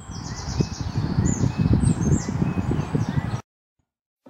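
Small songbirds chirping outdoors, with repeated short high notes that slide downward, over a loud, uneven low rumble. The sound cuts off abruptly a little before the end.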